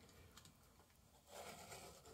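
Near silence, with a faint scraping starting about a second and a half in: a craft knife shaving a thin strip off MDF along a metal ruler.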